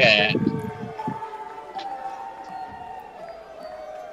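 A live rock band recording playing back: after a short loud burst at the start, a single held high note wavers and slides slowly downward in pitch.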